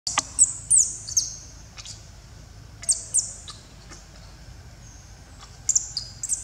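Birds chirping: sharp, high, downward-sweeping chirps, mostly in quick pairs, in a few clusters with quieter gaps between, over a faint low rumble.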